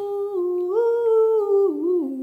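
A woman humming a short tune. She holds a few notes that step up to a high one in the middle, then drop lower near the end.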